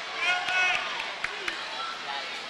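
Live sound of a basketball game in a gym: a few high-pitched squeals in the first second, then two short sharp knocks a little after the middle, over steady gym noise.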